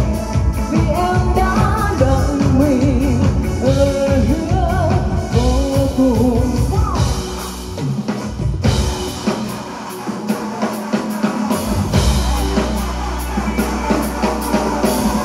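Live band: a woman sings a melody with vibrato over drum kit, electric guitar and keyboard. About halfway through, the singing stops and the bass and drums drop out for a few seconds, then the full band comes back in near the end.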